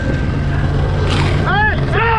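Steady low rumble of an open off-road vehicle's engine and wind while riding. A man's voice calls out about a second and a half in.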